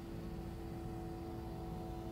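Soft background music: a few steady sustained tones held unchanged, with a low rumble beneath.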